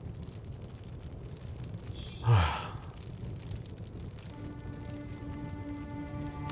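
A man's short breathy exhale, falling in pitch, about two seconds in. From about four seconds in, low sustained string music comes in and holds steady.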